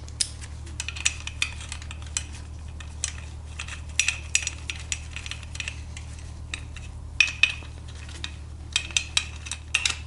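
Light metallic clicks and clinks, irregular with a quick run near the end, as long 8 mm steel bolts are threaded in and snugged down on a GY6 cylinder head by hand and with a small hand tool.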